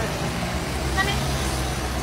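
Steady low background rumble, with one short high-pitched spoken word about a second in.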